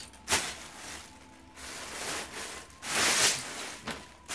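Loose plastic Lego pieces clattering and shuffling as a hand rummages through a bulk bag of them, in a few noisy bursts, the loudest about three seconds in.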